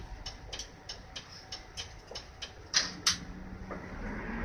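Turn-signal relay ticking steadily inside an Isuzu PDG-LV234N2 city bus, about three ticks a second, over the bus's quiet idle. Two louder, sharper clicks come near the end.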